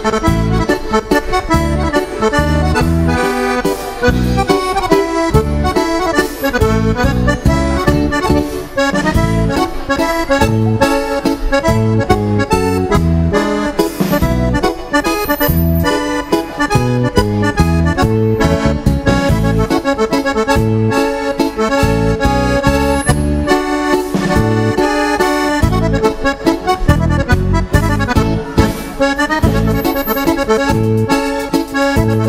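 Two accordions playing a dance tune over a steady, regular bass beat.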